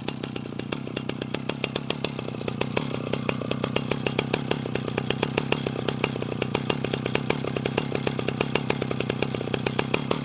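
Early-1980s Husqvarna L65 chainsaw's two-stroke engine idling, with a rapid, regular popping beat that grows a little louder about three seconds in.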